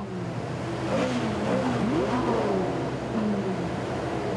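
Several sports car engines being revved in salute, their pitch rising and falling over a steady rumble.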